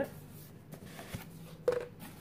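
Quiet handling noise of a cardboard tube box and its paper wrapping: light rustling with a couple of small clicks.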